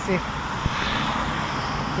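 A steady rushing noise with no distinct events, like vehicle or wind noise heard outdoors.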